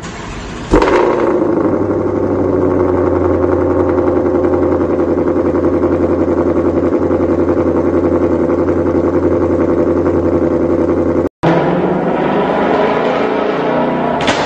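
Supercharged 5.2-litre V8 of a 2020 Shelby GT500 with a free-flowing exhaust fitted, starting with a sharp bang about a second in and then running at a steady, loud idle. It breaks off suddenly near the end and is heard again running under load on the dyno.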